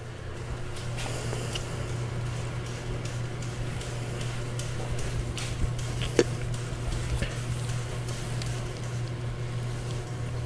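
Faint rustling and small scattered clicks of a greased steel inner cable being pushed by hand through its cable housing, over a steady low background hum.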